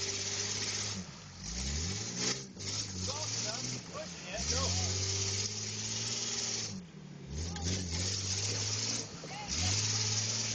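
SUV engine revving hard in repeated bursts, each rising and holding high for a second or more before dropping off, while its spinning tyres churn and spray through deep mud. The vehicle is buried with its axle housings dragging in the mud.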